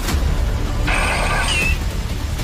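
Steady low rumble, with a short added electronic sound effect about a second in that ends in a quick up-and-down chirp.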